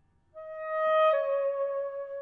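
Saxophone playing a single sustained note that enters after a brief hush and swells in loudness, then steps down to a lower held note about a second in.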